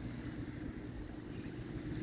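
Wind on a phone microphone outdoors: a steady low, uneven rumble with a faint hiss, no distinct events.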